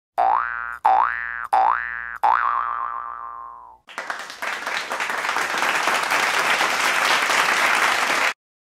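Four cartoon 'boing' sound effects in quick succession, each a twang sliding upward in pitch, the last one wavering as it fades. From about halfway through, a loud, dense rushing noise takes over.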